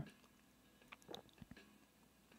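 Near silence in a pause between sung lines, with a few faint small clicks about a second in.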